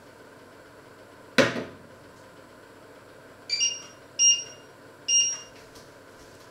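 A sharp knock as a ceramic jug is set down on a glass-ceramic cooktop, the loudest sound, followed by three short electronic beeps from the cooktop's touch controls as a cooking zone is switched on.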